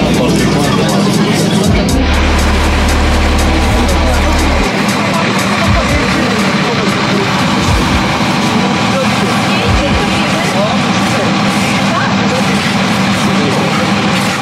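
Passengers chattering inside a bus over its running engine, with music playing; the engine's low drone stops about five seconds in.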